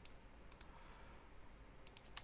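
Near silence with a few faint computer mouse clicks: one at the start, two about half a second in, and two more near the end.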